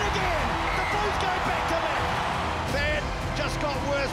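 Stadium crowd cheering and shouting, mixed with a music track.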